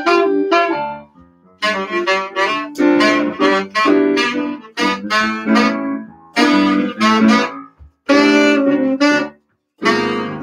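Saxophone playing jazz melody phrases over electric piano, broken by short pauses about a second in and near the end.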